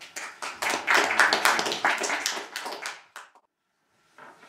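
A small audience applauding, the clapping loudest about a second in and thinning out, then cut off abruptly about three and a half seconds in.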